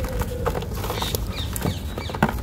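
A dry, dusty moulded sand bowl crumbling and snapping in the hands, with a few sharp cracks as chunks break off and grit falling into a plastic tub.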